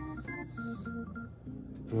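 Background organ music: a few held chords, then short repeated notes.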